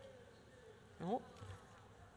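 Faint room tone of a large hall heard through the podium microphone, with a woman's short exclaimed "Oh" about a second in.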